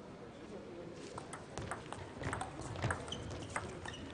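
Table tennis ball in play during a doubles rally: a quick series of sharp ticks from the ball striking the rackets and the table, starting about a second in.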